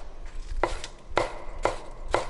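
Chef's knife slicing scallions on a wooden cutting board, the blade knocking on the board three times about half a second apart.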